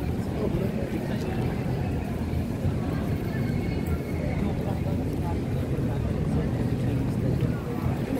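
Busy outdoor pedestrian-street ambience: a steady low rumble with the chatter of passers-by mixed in.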